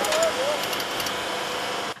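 Steady, even mechanical running noise, with a faint voice briefly heard about a quarter of a second in. The noise cuts off suddenly at the end.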